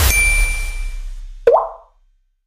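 Logo sting sound effect: a hit with a deep boom and a bright ringing ding that fades over about a second, then a short click and rising pop halfway through.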